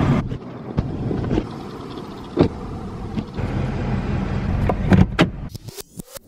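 Kia sedan with a steady low rumble, broken by a sharp clunk about two and a half seconds in and two more close together near the end.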